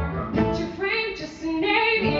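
A woman singing a musical-theatre ballad live into a microphone over instrumental accompaniment, her voice dipping briefly about a second and a half in before the next phrase.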